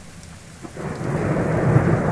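Thunder sound effect: a deep rumble that swells in a little under a second in and keeps building.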